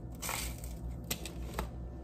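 A crunching bite into crisp buttered toast, lasting about half a second, then two short, sharp crunches as it is chewed, a little after a second in.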